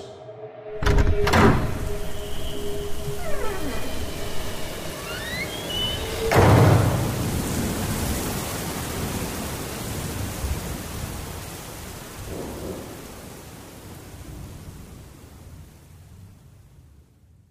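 Thunderstorm sound effect: a clap of thunder about a second in and a louder crash of thunder about six seconds in, over steady rain that slowly fades out. A few held notes and gliding tones sound under it in the first six seconds.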